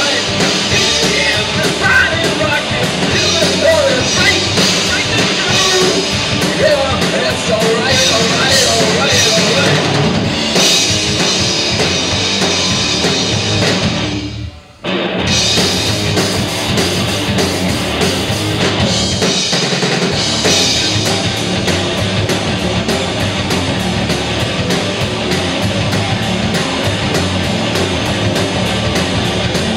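Live rock band of two electric guitars, bass guitar and drum kit playing a loud, dense instrumental passage. About halfway through the whole band stops dead for a moment, then comes back in together.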